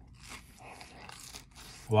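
Chewing a mouthful of crispy corn dog: a run of soft, irregular crunches.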